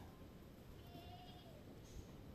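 A goat bleating faintly once, about a second in, a single wavering call of about half a second over near silence.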